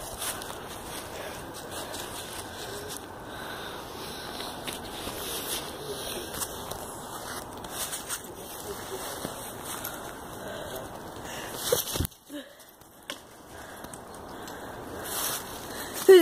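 Rustling and crackling from movement through dry leaf litter, with scattered small clicks and handling noise on the phone's microphone. A sharp knock comes about twelve seconds in.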